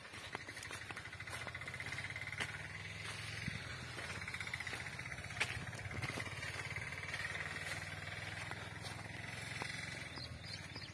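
Outdoor field ambience: a steady low hum under a high, fast-pulsing buzz, with a few light clicks.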